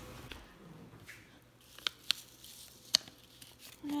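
Faint handling noises from pulling apart a tuft of fibre stuffing and handling a stapled paper cut-out: soft rustling with a few light clicks, two of them sharper, about two and three seconds in.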